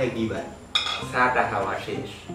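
A ceramic teacup set down on its saucer with a single sharp clink, about three-quarters of a second in.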